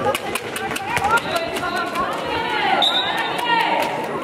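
Handball game sounds in a sports hall: a ball bouncing on the floor with repeated sharp knocks, and sneakers squeaking on the court, over the voices of players and spectators.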